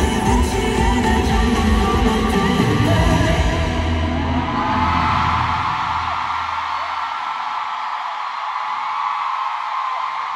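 Loud live concert music with heavy bass, mixed with an arena crowd yelling along; about five seconds in, the music fades out and the crowd's high-pitched screaming carries on.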